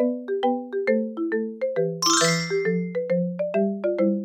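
Cheerful children's background music: a bright mallet-percussion melody like a marimba or xylophone in quick, even notes over a simple bass line, with a brief high sparkling flourish about halfway through.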